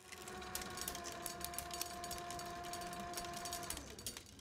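A motor-driven reel machine running, a steady whir with rapid clicking and crackle. Shortly before the end the whir falls in pitch and stops as the machine runs down, while the clicking goes on.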